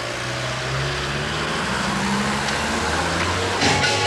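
A van driving past on a street, its engine and tyres steady and slowly growing louder. Near the end, electronic dance music with a steady beat cuts in.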